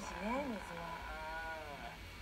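A person's voice making two drawn-out, wordless sounds: a short one that rises and falls, then a longer one that swells up and falls away.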